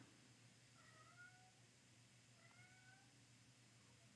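Near silence broken by two faint, short animal calls about two seconds apart, each rising slightly in pitch.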